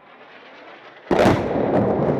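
A heavy artillery blast about a second in, after a faint rising hiss, followed by a long rolling rumble across the valley: an indirect-fire round going off.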